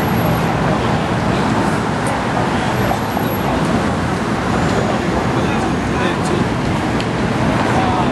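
City street ambience: steady traffic noise mixed with the voices of passing pedestrians.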